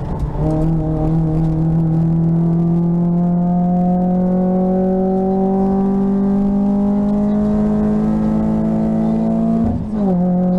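VW Lupo GTI rally car's four-cylinder engine heard from inside the cabin, pulling under load with its note climbing slowly. There is a gear change just after the start, and another about a second before the end, each a short break and drop in the note.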